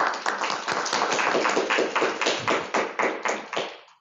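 A small audience applauding, the clapping thinning out and dying away near the end.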